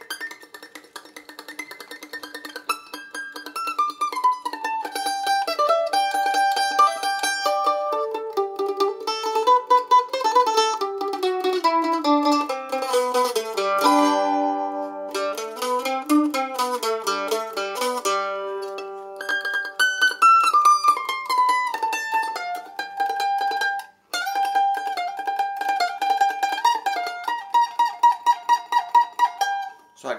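A budget Rogue A-style mandolin picked in scale runs that step down in pitch, wandering into a blues scale, with stretches of fast repeated picking on single notes and a short break a little past two-thirds of the way through.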